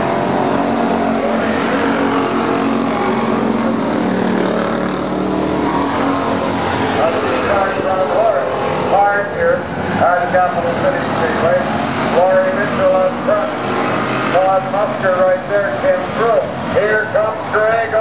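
Pack of Thunder Car stock-class race cars running at speed around a paved oval, a steady engine drone of several cars together. From about halfway through, a voice talks over it.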